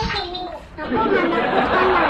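Children's voices: one high voice speaking, then from about a second in many voices talking over one another in a loud chatter, heard through a tablet's speaker on a video call.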